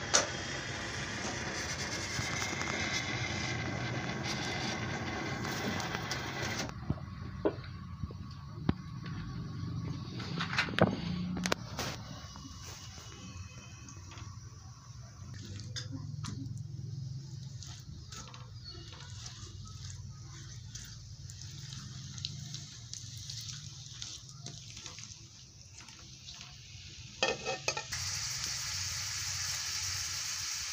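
Sliced onions and ghee frying in a metal karahi with a soft sizzle, and a steel ladle clinking and scraping against the pan, loudest about eleven seconds in.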